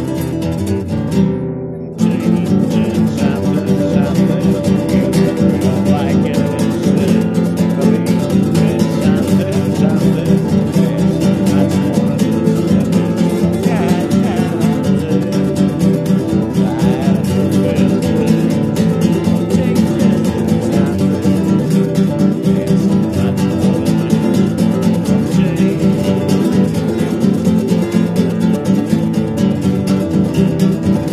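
Acoustic guitar strummed fast and steadily in an improvised jam, with a brief break about two seconds in before the strumming resumes.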